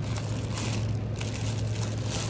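Plastic produce bags of apples crinkling and rustling as they are handled, over a steady low hum.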